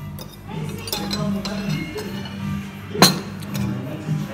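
Music playing, with cutlery clinking against a plate and glassware; one sharp, loud clink about three seconds in.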